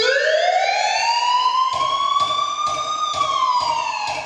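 A siren sound effect opening the dance routine's music track: one long wail that rises and levels off, then falls near the end, with a steady beat of clicks joining in about halfway through.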